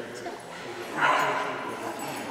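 A puppy gives a single sharp yip about a second in, over low background voices.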